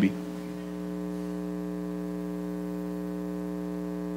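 Steady electrical mains hum: a low buzz with many evenly spaced overtones, holding level once it settles about half a second in.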